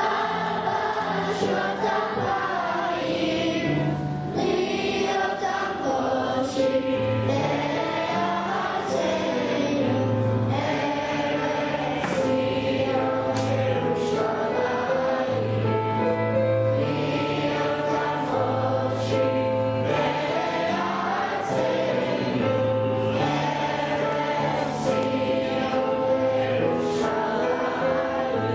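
A choir singing with instrumental accompaniment, over a bass line whose low notes change about once a second.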